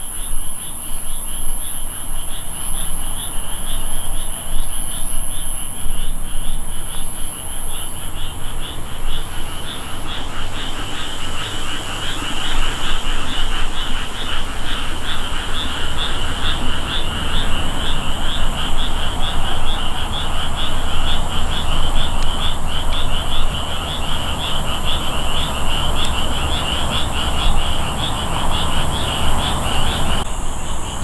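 Night chorus of calling animals: rapid, evenly pulsed high-pitched calls repeating without a break, over a steady high-pitched hiss.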